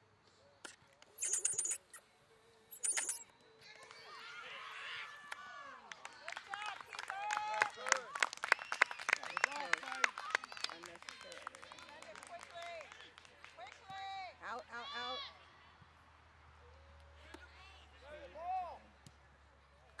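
Distant voices of players and spectators calling out across a soccer field, overlapping and loudest in the middle stretch as play breaks upfield. Two short noisy bursts come about a second in and again at about three seconds.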